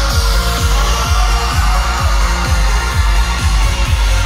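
Live wedding band playing loud dance music with a steady drum beat and heavy bass.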